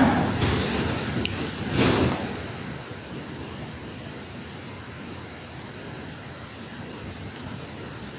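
Rustling noise for about two seconds, the loudest near the two-second mark, then a steady even hiss of background noise through a phone's microphone.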